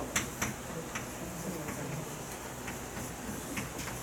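Chalk writing on a blackboard: irregular sharp taps and short scratches as the strokes go down, the two loudest in the first half-second.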